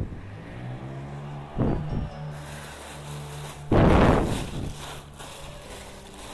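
Background music with a steady bass line, broken by three loud bursts of rustling and handling noise, the last and loudest a little past halfway, as black plastic bags of clothes are rummaged through.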